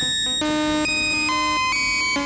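Baby-8 step sequencer driving a Eurorack oscillator through an envelope-controlled VCA and a delay: a synth tone stepping through a sequence of different pitches, a new note about every half second, clocked by the modular's clock.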